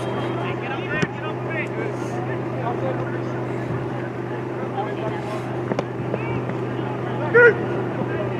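Soccer players shouting and calling to each other at a distance, over a steady low hum. A few sharp knocks of the ball being kicked come through, and one louder shout comes near the end.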